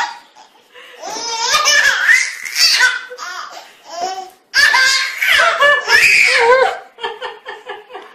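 Baby laughing in long belly-laugh bouts, with a run of short quick laughs near the end.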